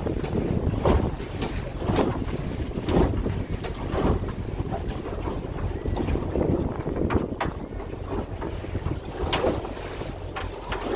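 Motorboat under way, its engine running with a steady low rumble. Repeated splashes come about once a second as the hull slaps through small waves, with wind buffeting the microphone.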